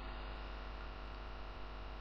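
Steady low electrical mains hum with faint hiss: the background noise of the recording chain.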